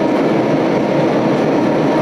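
Diesel locomotive engine running steadily as the locomotive pulls a passenger train slowly along the platform, a loud continuous hum.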